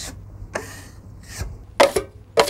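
Wide putty knife spreading joint compound on drywall with a soft scrape, then a louder short scrape near the end as the knife is wiped against the edge of the mud pan.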